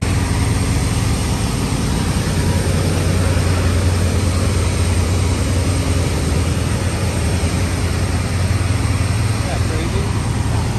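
Bank of large containerized generator sets at a power plant running: a loud, steady drone with a strong low hum.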